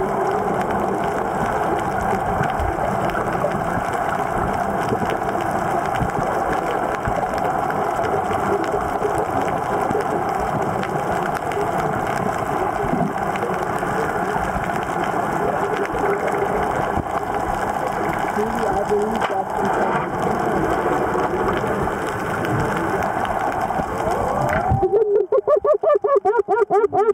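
Muffled, steady underwater noise with indistinct voices blurred into it. About a second before the end it changes suddenly to a louder pulsing, warbling sound.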